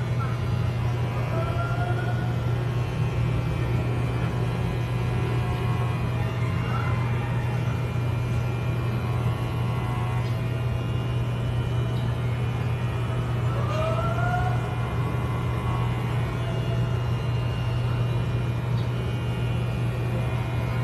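Electric hair clippers running with a steady low buzz as they are drawn through a dog's coat.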